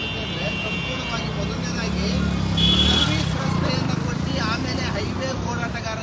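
Men talking over the low rumble of a passing motor vehicle, which swells and is loudest about three seconds in, with a brief high-pitched tone at the same moment.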